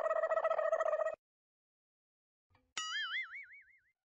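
Cartoon sound effects edited into the soundtrack: first a short buzzy, rapidly pulsing tone lasting about a second, then, after a gap of dead silence, a springy 'boing' whose pitch jumps up and wobbles up and down as it fades.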